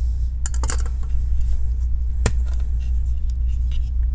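Metal laptop heatsink and fan assembly being handled and lifted free: a few light clicks and rattles about half a second in and a single sharp click just past two seconds. A steady low hum runs underneath.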